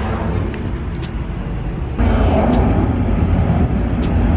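Airplane engines making a loud, steady rumble as the plane flies low over from the nearby airport after takeoff, growing louder about halfway through.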